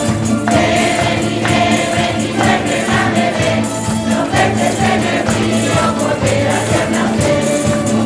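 A folk choir of many voices singing a Christmas song, accompanied by strummed guitars and other plucked string instruments, with hand clapping keeping the beat.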